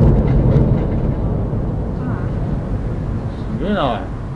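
Boom of a distant explosion at a burning bayside industrial plant: a sudden low rumble that sets in abruptly and rolls on for several seconds, slowly easing.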